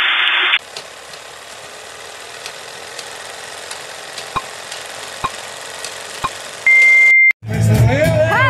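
Retro video-tape transition sound effect: a short burst of static, then a steady hiss with a few faint clicks, ending in a loud, steady high beep of about half a second. Right after it, the sound cuts out for a moment.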